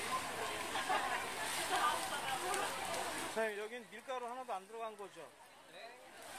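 Market crowd chatter for about three seconds. Then the background drops away and a single voice carries a drawn-out, wavering sing-song phrase for about two seconds before fading.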